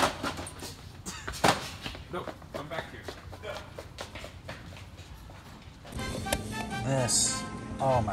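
Scattered clicks and knocks of boxed toys being handled and shifted on a metal store shelf. From about six seconds in, voices and music come in over it.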